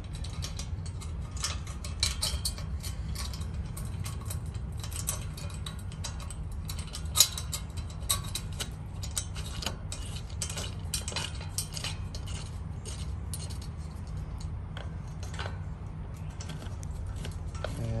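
Small metal clicks and ticks as machine bolts and their spacers are threaded by hand into a steel gate lock, with one sharper click about seven seconds in, over a steady low rumble.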